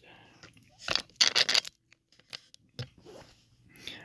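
Metal tweezers clicking and scraping against a wooden pin tray as tiny brass lock pins are picked up and set down. There is a single click about a second in, then a brief cluster of clicks and scraping, then a few faint ticks.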